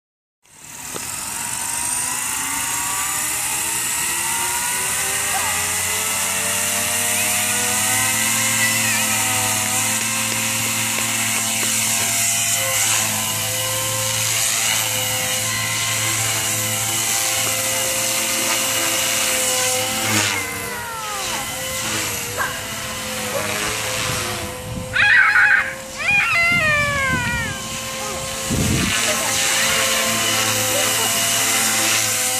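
Radio-controlled model helicopter's motor and rotor spinning up from rest to a steady whine over the first few seconds. From about two-thirds of the way in, the pitch rises and falls as it flies and manoeuvres, with brief louder surges.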